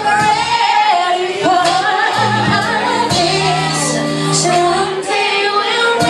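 A woman singing live into a microphone over a band's sustained low keyboard and bass notes, her voice wavering with vibrato.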